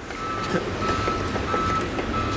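An electronic warning beeper sounding short high beeps at an even pace, about one every 0.7 seconds, three in all, over a low steady hum.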